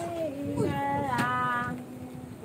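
A voice singing long, steady held notes, a higher note taking over about halfway through.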